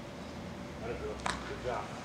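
Low steady hum, then a faint voice in the second half saying "yeah", with one short sharp click just before it.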